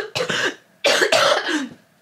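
A woman coughing repeatedly in two short bouts of several coughs each, the second ending shortly before the end. The cough comes from influenza A.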